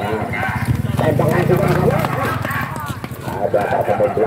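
Men's voices at an amateur football match, talking and calling out over one another, with a low rumble under them in the first half.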